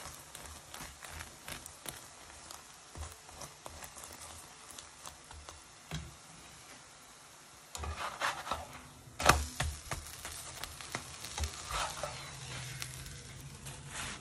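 Ghee sizzling and crackling under an aloo paratha frying in a nonstick pan, with a spoon spreading the ghee. From about halfway through, louder clicks and scrapes of utensils against the pan.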